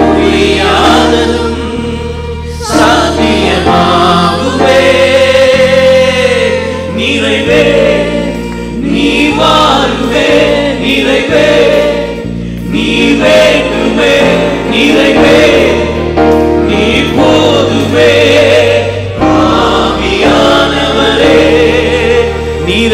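A worship band and vocal team singing a Tamil praise song, with a lead singer and backing voices over held keyboard chords, bass and electric guitar.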